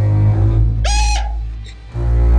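Background music with a steady deep bass, and a short high-pitched shriek about a second in.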